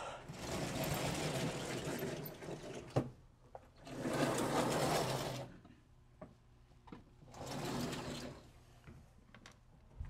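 Vertically sliding blackboard panels running along their tracks in three runs of rumbling noise, the first about two and a half seconds long and the others shorter. There is a sharp knock about three seconds in.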